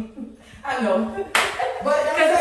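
A woman's hand claps, the sharpest one about a second and a half in, over her excited, laughing voice.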